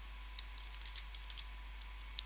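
Faint typing on a computer keyboard: a scattered run of light, quick key clicks.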